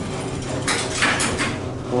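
Elevator car doors sliding shut, a noisy rattling stretch lasting about a second, over the car's steady low hum.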